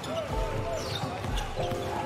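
A basketball being dribbled on a hardwood court, bouncing twice about a second apart, with sneakers squeaking as players cut and shuffle.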